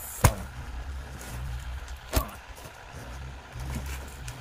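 Suit sets in plastic zipper packets laid down one at a time onto a pile: two sharp plastic slaps about two seconds apart, over a steady low rumble.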